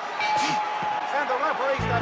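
Boxing-film soundtrack: a crowd yelling over each other, with a punch landing about half a second in. Near the end a low held note enters, the A-minor opening of the orchestral score in trombone, tuba and bass.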